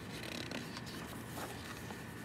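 Quiet rustle of a hardcover picture book's paper page being turned by hand.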